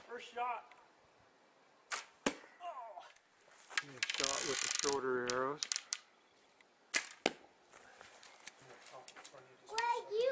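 Arrows shot from a homemade Amazon-style stick bow: sharp snaps and a whooshing noise about a second long. A short voice sound comes in the middle, and there are quiet gaps between shots.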